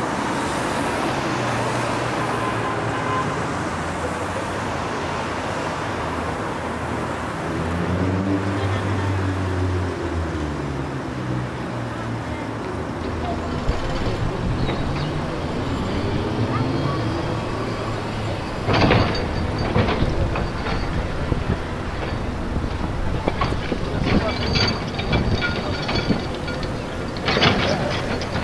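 Street-works ambience: a vehicle engine running steadily, its pitch rising and falling for a few seconds around the middle. Sharp scrapes and knocks of hand tools come in near the end, about 19 s in and again in the last few seconds.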